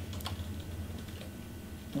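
Faint typing on a computer keyboard: a few scattered key clicks over a steady low room hum.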